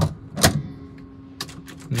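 Sharp mechanical clicks from the car's ignition key and controls, about half a second apart with the second louder, and no starter cranking: the shifter is in gear and the neutral safety switch is blocking the starter. A faint steady hum follows, with one more click.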